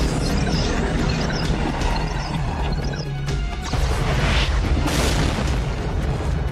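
Action-film soundtrack: music with a heavy low end, mixed with explosion booms from pyrotechnic blasts. One louder blast comes a little after the middle.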